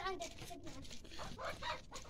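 A rooster crowing, the long call falling in pitch and tailing off about half a second in.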